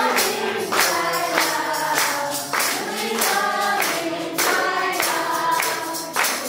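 A group of women and girls singing a devotional Hindi bhajan together, with hand claps and jingling percussion keeping a steady beat of about three strikes every two seconds.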